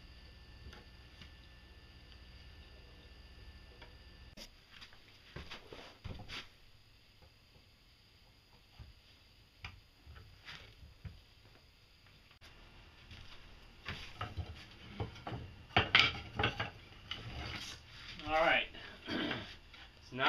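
A faint steady hum that stops about four seconds in, then scattered knocks and clicks of things being handled on a workbench, growing busier and louder toward the end.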